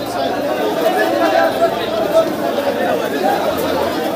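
Dense crowd chatter: many men talking at once, a steady overlapping babble with no single voice standing out.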